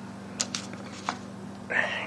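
A few light clicks and rustles of small objects being handled, as a small accessory box is picked up, over a steady low hum.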